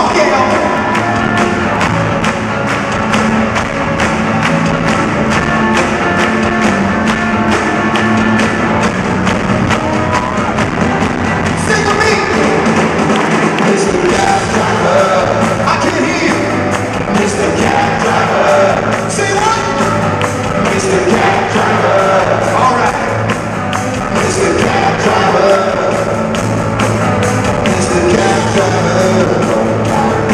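Live rock band playing in an arena, electric guitars over a steady drum beat, heard from among the audience.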